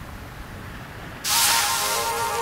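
A cartoon sound effect: after a quiet stretch, a sudden loud hissing whoosh a little past halfway, with background music notes starting at the same moment.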